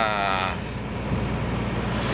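Steady engine and road noise inside a moving truck's cab. A drawn-out voice trails off in the first half second.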